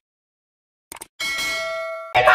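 Sound effect of a subscribe-button animation: two quick mouse clicks about a second in, then a bright bell ding that rings on steadily for most of a second, the notification-bell chime.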